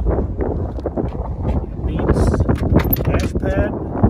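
Wind buffeting the microphone in a steady low rumble, with brief indistinct speech.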